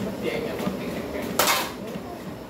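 A single short, sharp clatter about one and a half seconds in, over a steady background rumble.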